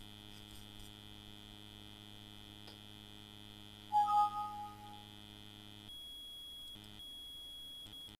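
Steady electrical mains hum from the recording setup. About four seconds in, a short two-note Windows warning chime sounds as a PowerPoint dialog box pops up, fading within a second. Near the end the hum drops away to a faint high whine.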